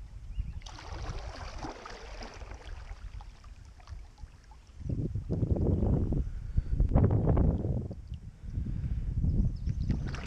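A double-bladed kayak paddle stroking through calm water, with the swish and drip of the blades. Low rumbling surges on the microphone run through the second half.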